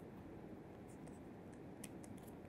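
Faint scratching and light ticks of a stylus writing on a tablet, with one clearer tick near the end, over quiet room tone.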